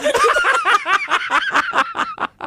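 People laughing: a quick, unbroken run of chuckling laughs.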